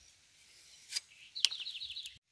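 A small bird chirping, a quick run of high notes in the last half second. Two sharp clicks come just before, as green bananas are handled.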